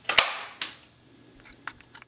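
Sharp clicks from an electric range's surface-element control knob being turned, followed by a few fainter ticks.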